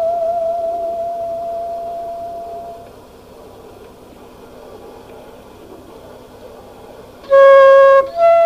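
A musical saw holds one high note with a slow, wavering vibrato and fades away over about three seconds. After a pause, a flute starts a loud, clear note near the end.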